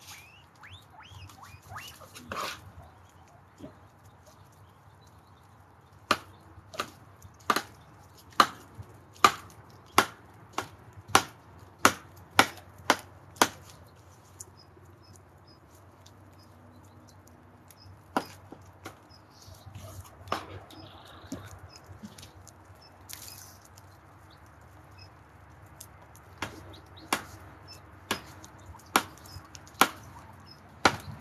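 Knife chopping vegetables on a tabletop in sharp, separate chops. There is a quick run of about a dozen chops in the first half, a few scattered chops after that, and another short run near the end.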